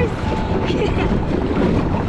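Water rushing and splashing around a round family raft as it slides down a water slide flume, with wind buffeting the microphone: a loud, steady rush.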